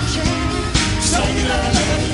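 Live band playing an upbeat pop-soul song with a lead singer, over a steady beat.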